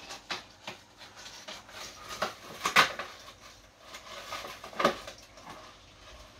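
Irregular rustling with light clicks and knocks, loudest about three seconds and five seconds in: the branches and baubles of an artificial Christmas tree jostled as a topper is pushed onto its top.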